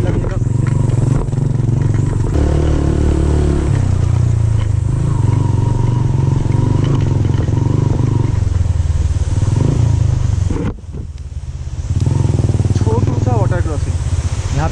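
Motorcycle engine running steadily while riding a rough, unpaved track, its sound dropping briefly about eleven seconds in before picking up again.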